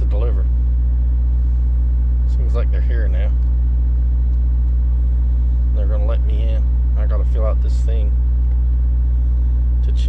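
Semi truck's diesel engine idling, a steady low drone heard from inside the cab.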